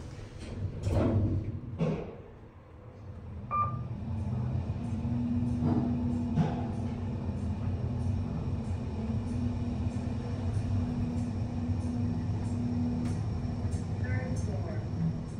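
Kone EcoSpace machine-room-less traction elevator heard from inside the cab: two thuds as the doors shut, a short beep, then the car running upward with a steady hum and a low steady tone from the drive.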